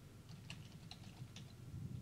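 Faint typing on a computer keyboard: a few scattered keystrokes over a low hum.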